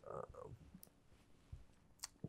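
Near silence: room tone, with a faint brief murmur of a man's voice and small mouth clicks in the first half second.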